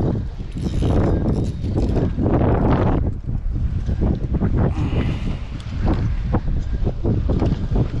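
Wind buffeting the microphone of a body-worn camera: a heavy, gusty rumble, broken by short knocks and rustles of handling.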